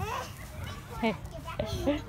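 Children playing, with short bursts of young voices calling out, among them a brief "hey" about halfway through.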